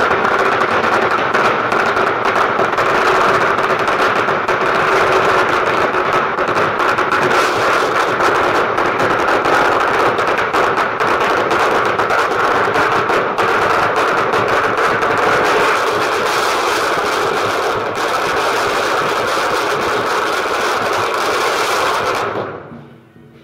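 A long string of firecrackers going off on the road: a dense, unbroken, rapid crackle of small bangs that keeps up at a steady loudness throughout.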